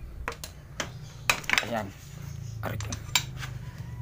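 Steel box wrench clinking against a small motorcycle engine's tappet cover as it is fitted and worked on the 17 mm cap: several sharp, separate metallic clinks.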